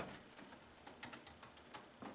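Faint clicks of typing on a computer keyboard, about a dozen light keystrokes spread irregularly over two seconds.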